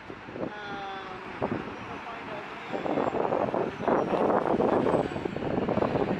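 Street sound of road traffic and people talking close by. It grows markedly louder and denser about three seconds in.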